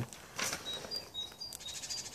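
A small bird singing a short two-note phrase, a higher note then a lower one, repeated several times. There is a brief rustle about half a second in.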